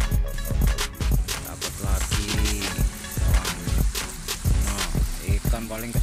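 Background music with a steady beat, about two thumps a second, and a voice over it.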